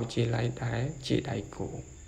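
Speech: a voice narrating, which stops near the end, over a steady faint high-pitched whine.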